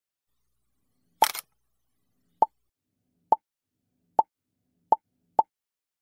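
Animated-intro pop sound effects: a short noisy pop about a second in, then five short plops, each following the last a little sooner.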